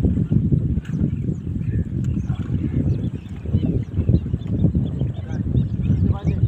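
Wind buffeting an open microphone: a loud, uneven low rumble, with faint short high chirps above it.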